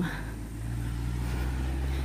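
A car driving past on the road, its engine a low, steady hum.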